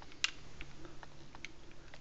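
Light clicks and ticks from a Kahr K40 pistol's steel slide stop pin being pushed down and worked into place during reassembly: one sharper click about a quarter second in, then several fainter ticks.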